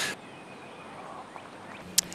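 Faint outdoor ambience with faint bird calls, and a sharp click at the very end.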